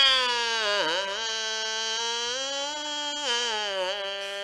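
A man's long, loud comic wail of mock crying into a microphone, one held 'ah' whose pitch sags about a second in, recovers, and dips again near the end.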